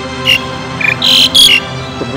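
Soft background music with steady low notes, broken by four or five short, loud high-pitched chirps in the first second and a half.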